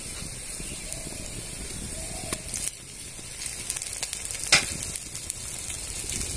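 Pumpkin-flower fritters sizzling steadily as they shallow-fry in a thin layer of oil in a steel wok, with a couple of sharp pops of spitting oil, about two seconds in and again past four seconds.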